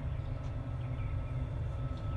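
Steady low outdoor rumble with a few faint high chirps.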